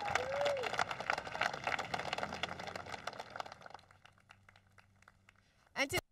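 Audience applauding, many scattered hand claps that thin out and fade away after about four seconds.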